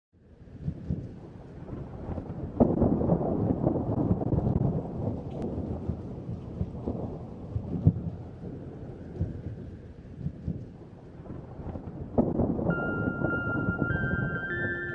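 Thunder rumbling over steady rain. The rumble swells loudest about two and a half seconds in and again near the end, where a few held music notes begin to come in.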